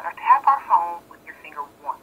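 Speech only: a voice over a telephone line, thin and cut off above the middle range.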